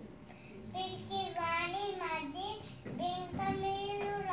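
A young girl singing or chanting a verse in a high child's voice, drawing out long held notes, the longest near the end.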